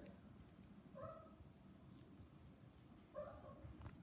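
Near silence with two faint, short whimpers from a dog, about a second in and again just after three seconds.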